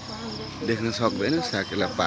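Insects chirping in a steady, high-pitched, finely pulsing trill, with a man's voice talking over it from about half a second in.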